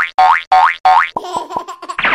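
Cartoon 'boing' sound effects: four quick springy tones in a row, each sliding upward in pitch. They are followed by a short clattery, tinkling effect.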